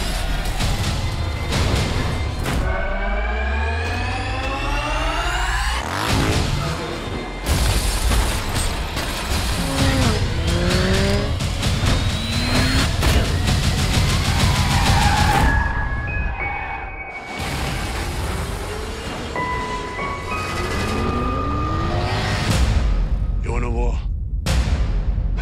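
Action-trailer sound mix: dramatic music laid over vehicle sound effects, with an engine revving up from about three seconds in and ending in a hit, and repeated booms and crashes throughout.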